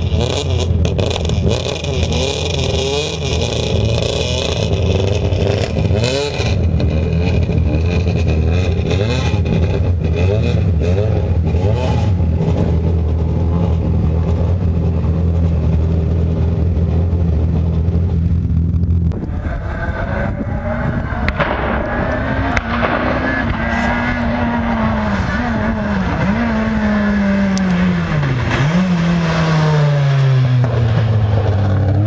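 Renault Clio R3 rally car's 2.0-litre four-cylinder engine running at a steady idle with rattling and clicking over the hum. About two-thirds through, it gives way to the car driving hard, the revs climbing and dropping repeatedly with gear changes.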